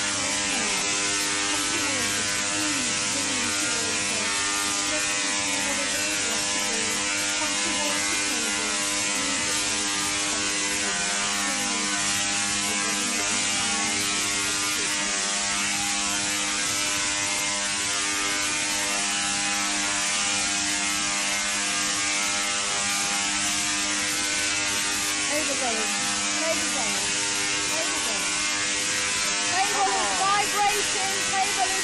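High-voltage electrical arcs from a spark machine, a loud, steady crackling buzz that runs on without a break, with an electrical hum beneath it.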